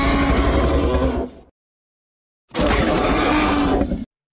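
A loud, beast-like roar sound effect heard twice. The first dies away about one and a half seconds in; the second starts about a second later and cuts off abruptly at the end.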